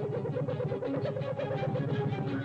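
Cartoon soundtrack: a rapid warbling pulse of about a dozen beats a second over a steady low drone, fading out toward the end.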